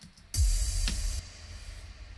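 An EDM impact hit sound effect played back from the production project: a sudden deep boom with a bright noisy crash on top, the crash cutting off after about a second while the deep rumble fades away.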